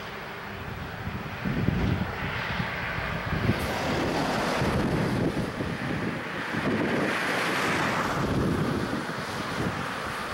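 Wind buffeting the microphone over road traffic: the tyre and engine noise of passing cars and trucks swells and fades as vehicles go by.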